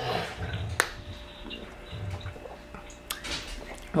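Quiet sipping of a drink from a cup and a straw tumbler, with faint liquid sounds and two sharp clicks, about a second in and near the end.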